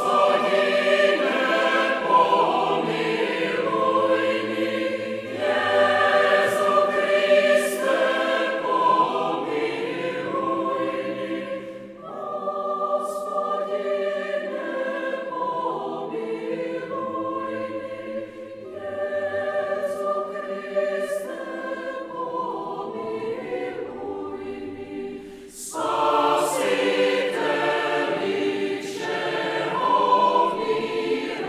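Mixed choir of women's and men's voices singing held chords, growing softer about twelve seconds in and swelling louder again near the end.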